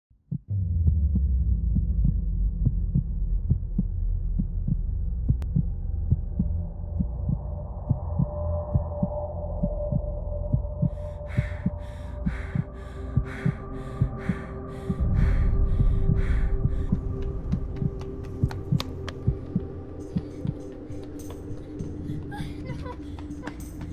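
Dark film-score sound design: a low, throbbing drone with heartbeat-like pulses and scattered knocks over it. About halfway through, a higher pulse at roughly two beats a second joins in along with held tones, and the drone swells near the end of the pulsing before it thins out.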